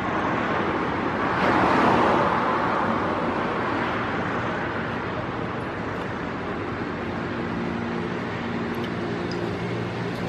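Street traffic noise, swelling as a vehicle passes about two seconds in, with a steady engine hum coming in during the second half.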